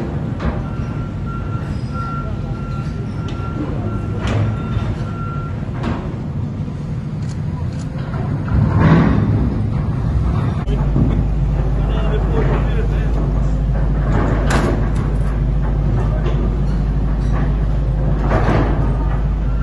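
Heavy construction machinery running in a tunnel, with voices in the background and a few sharp knocks; a steady low engine drone grows louder about ten seconds in and holds.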